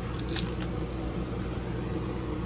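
Clear plastic record sleeve crinkling briefly as an LP jacket is handled and turned over, a few short crackles near the start, over a steady low hum.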